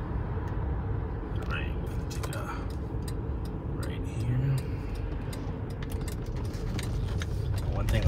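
Cabin noise inside a 2008 Lincoln Town Car as it slows down: a steady low rumble of tyres and engine.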